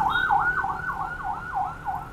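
Electronic emergency-vehicle siren on a fast yelp, its pitch sweeping down and up about four times a second, fading near the end.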